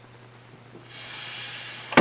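An audible intake of breath, a steady hiss lasting about a second, starting about a second in, over a low steady hum; a short click near the end.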